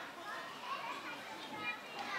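Children's voices chattering and calling over one another, a mix of several kids talking at once.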